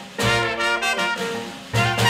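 Traditional jazz band playing a ragtime number, trumpet and trombone leading over string bass and drums, with a brief break in the phrase near the end before the band comes back in.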